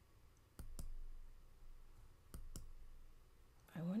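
Computer mouse clicks: two pairs of quick, sharp clicks about a second and a half apart.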